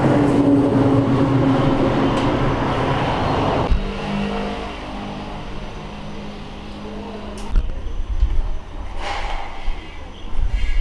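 An engine running with a steady, slightly sinking pitch, cutting off abruptly about four seconds in; a quieter steady engine hum follows, with low rumbling near the end.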